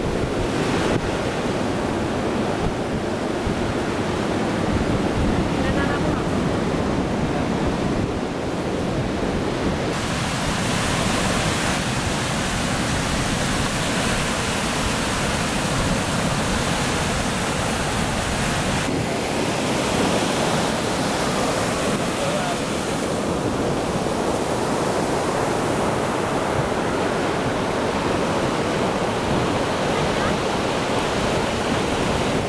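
Ocean surf breaking and washing up a beach, mixed with wind on the microphone, a steady rushing noise that grows brighter and hissier about a third of the way in.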